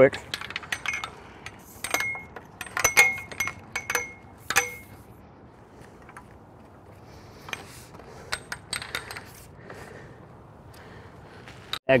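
Metal tripod being unfolded and set up: a series of sharp metallic clinks and clicks with a short ringing tone, closely spaced in the first few seconds, then a few fainter clicks later on.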